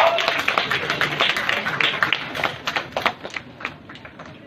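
Audience applauding, the scattered clapping thinning out and dying away near the end.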